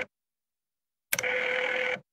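Desk telephone's bell ringing: two rings, each about a second long, a second apart.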